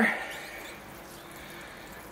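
Water showering steadily from a watering can's rose onto the soil of a potted bonsai.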